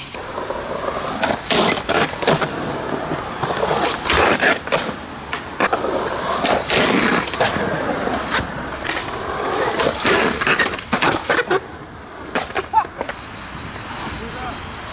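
Skateboard wheels rolling, broken by a series of sharp clacks from the board popping and landing during ledge tricks; the loudest clack comes near the end.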